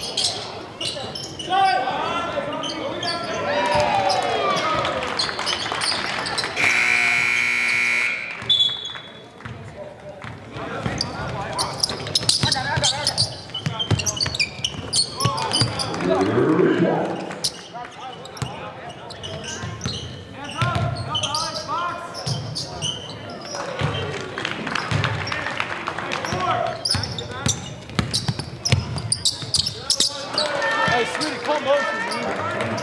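Indoor basketball game: a ball bouncing on the court among sneaker squeaks and players' and crowd voices in a large gym. About seven seconds in, a scoreboard buzzer sounds for about a second.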